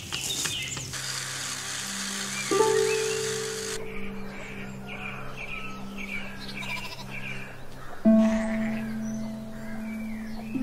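Background film music of long held low notes, with new notes struck sharply about two and a half seconds in and again near eight seconds. A quick run of short high chirps sounds in the middle.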